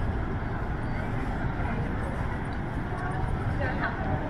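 Scattered voices of people walking by, over a steady low rumble.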